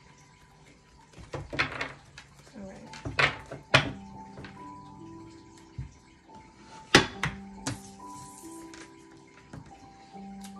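Tarot card deck being handled on a wooden table: rustles and several sharp taps and knocks, the loudest about seven seconds in. Soft background music with long held notes runs underneath.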